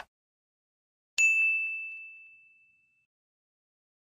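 Notification-bell ding sound effect: a single bright strike about a second in, ringing on one high tone and fading out over about two seconds.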